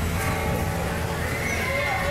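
Held notes from a beiguan procession band's wind instruments, several steady tones with a higher note joining about one and a half seconds in, over a constant low hum and street voices.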